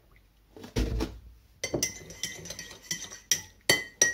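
A thump about a second in, then a metal teaspoon stirring tea in a ceramic mug, clinking repeatedly against the sides with short rings.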